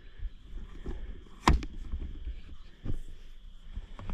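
A sharp knock about a second and a half in and a fainter one near three seconds, over a low rumble.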